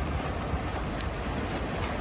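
Steady outdoor pool ambience during a race: a continuous wash of noise from swimmers splashing down the lanes at a distance.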